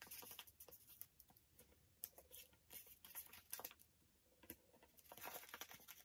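Faint handling of round paper dot stickers: light ticks and short rustles as they are peeled from their backing sheet and pressed onto a paper page, with a longer rustle about five seconds in.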